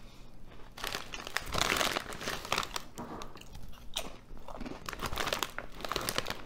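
Close-up crunching of a mouthful of Ruffles ridged potato chips being chewed. The crunching gets loud about a second in and goes on in quick crisp bursts.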